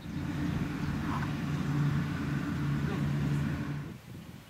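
A motor running with a steady low hum, starting and stopping abruptly.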